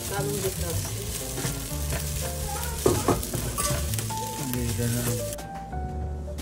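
Silicone spatula stirring squash chunks through simmering coconut milk in a stainless-steel pot, with a steady wet hiss and one sharp knock about halfway. The hiss drops away near the end. Background music plays underneath.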